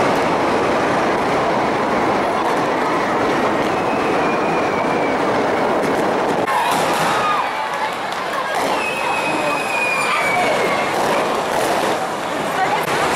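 Firework rockets hissing and whooshing along a street in a steady, loud rush. A couple of falling whistles stand out, about four seconds in and again about nine seconds in.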